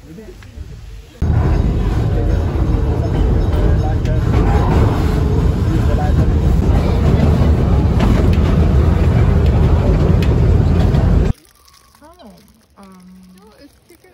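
Loud, steady rush of wind and rumble from riding in an open-sided carriage of a moving train. It starts suddenly about a second in and cuts off suddenly near the end.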